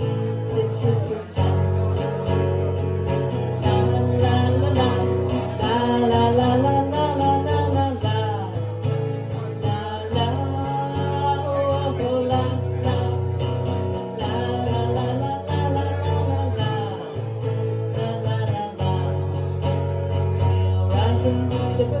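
Live solo performance: an acoustic guitar strummed in steady chords with a woman singing over it.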